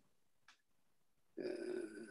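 Near silence on a video-call line, then about one and a half seconds in a voice holding a drawn-out "uh" of hesitation.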